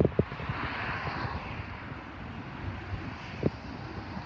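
Distant vehicle noise outdoors: a steady rushing sound that swells about a second in and then slowly fades, with a couple of faint knocks.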